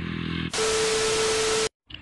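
TV-static glitch transition effect about half a second in: a loud hiss of white noise with a steady mid-pitched beep under it. It lasts about a second and cuts off suddenly.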